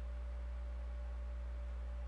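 Steady low electrical hum with a faint higher steady tone above it, and nothing else.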